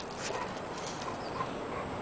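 Faint sounds of two dogs moving about on concrete, with a few light clicks over steady background noise.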